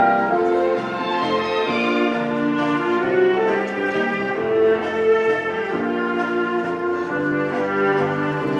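Orchestral music with brass, held notes changing every half second or so: the couple's ice dance program music.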